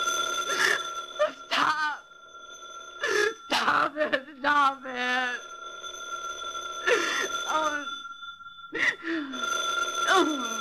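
A telephone bell ringing: one ring at the start and another beginning near the end. Over it comes a woman's wordless sobbing cries.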